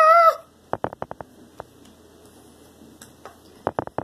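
A girl's high, drawn-out squealed call at the very start, then quiet broken by two runs of small sharp clicks and taps, one about a second in and one near the end, from kitchen items being handled while she makes play dough.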